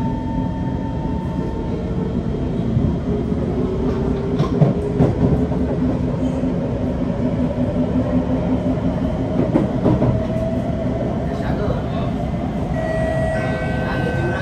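C151 train pulling away and gathering speed, with the motor whine rising slowly in pitch over a steady rumble of wheels on rail. The car is driven by Mitsubishi Electric GTO chopper traction equipment. A few short knocks come from the wheels passing over rail joints or points.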